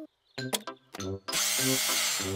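Cartoon power-drill sound effect: a few short clicks, then a loud whirring drill from about a second and a half in, over light bouncy background music.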